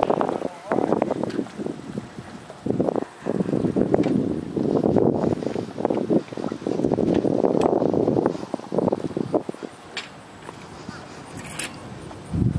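Indistinct, muffled voices in several bursts of a second or two, with quieter gaps between them.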